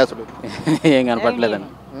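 Speech: a man talking for about a second and a half, then a pause with only faint background noise.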